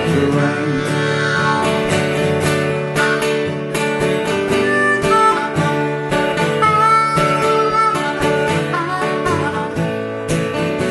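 Live country band playing an instrumental break: acoustic and electric guitars strumming steadily, with a harmonica playing over them. The last sung word of a line trails off at the start.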